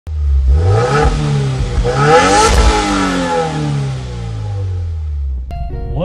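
Car engine accelerating, its note climbing to a loud peak about two and a half seconds in and then falling away. Guitar music comes in near the end.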